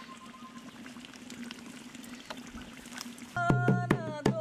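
Faint outdoor background, then near the end a hand-beaten barrel drum (dholak) and a voice singing start together suddenly and loudly, the drum striking sharp, quick beats under the song.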